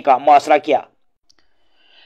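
A man's voice reading Urdu news narration stops a little under a second in, followed by near silence with a faint click.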